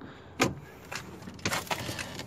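An old wooden door being forced open: a sharp knock about half a second in, a second knock near one second, then a short burst of rattling and clattering as it gives.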